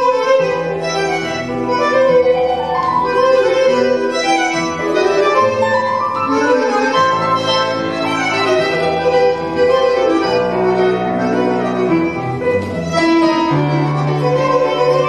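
A tango orchestra playing live: a violin carries the melody over accordion-like reeds and piano, at a steady dance pulse.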